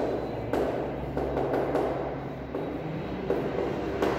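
Chalk writing on a blackboard: a run of short scratchy strokes, each starting with a light tap, as a word is written, over a low steady hum.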